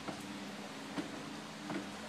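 A faint steady hum with three light knocks of kitchenware being handled at the stove: one at the start, one about a second in and one near the end.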